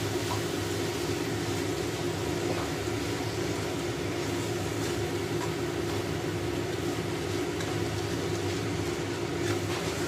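Curry paste frying in a stainless steel wok over medium heat, stirred and scraped with a wooden spatula, under a steady low machine hum.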